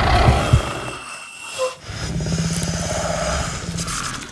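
Horror-film soundtrack: a dense, low rumbling drone of tense sound design, with a steady low hum through the second half.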